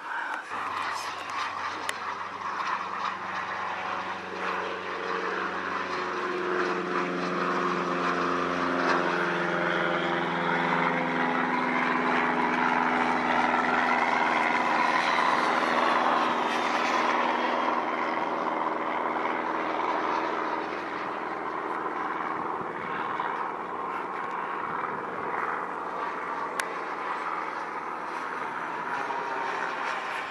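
JetCat 200 model jet turbine powering a BVM Ultra Bandit RC jet in flight: a continuous rushing jet noise that swells to its loudest about halfway through as the jet passes, then eases off, with a few slowly falling tones early on.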